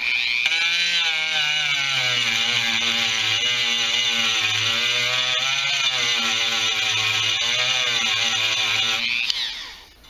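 Dremel rotary tool with a small sanding drum grinding down a weld repair on a two-stroke dirt bike's engine case half. It gives a steady high whine whose pitch wavers slightly as the drum is worked against the metal. It starts suddenly and winds down about nine seconds in.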